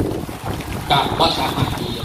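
A man's voice speaking Thai through a microphone, with a steady low rumble of wind on the microphone underneath.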